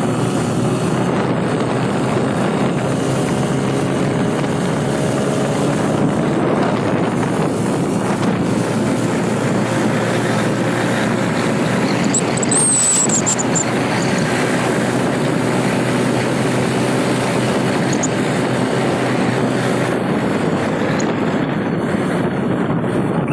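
Steady engine and road noise of a vehicle driving along a highway, heard from on board, with a brief high chirp about halfway through.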